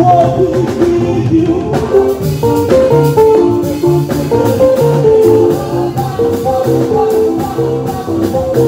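Live makossa-style praise music: a keyboard plays quick, guitar-like seben runs on a piano sound over a bass line and percussion.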